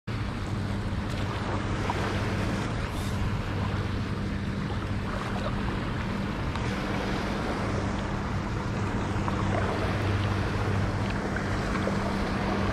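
Outboard motor of a small center-console boat running at a steady low drone, growing slightly louder near the end, over a wash of water and wind noise.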